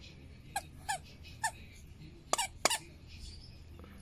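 A plush dog toy's squeaker squeaking five times in short, sharp squeaks as a dog bites down on it; the last two squeaks, close together, are the loudest.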